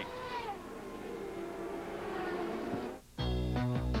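Softer background race-broadcast sound with engine noise for about three seconds, then a brief drop to silence. A loud musical jingle with heavy bass starts just after three seconds in, introducing a sponsor segment.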